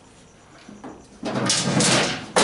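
An oil drain hose rubbing and scraping against a portable generator's plastic chassis as it is pushed up into place, a rough sliding noise that starts a little over a second in.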